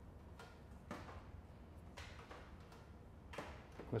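A few faint, brief clicks and rustles over quiet room tone, from hair and a styling wand being handled.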